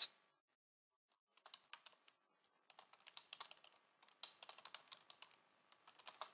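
Faint computer keyboard typing: quick keystrokes in three short runs, starting about a second and a half in, about three seconds in and just after four seconds in.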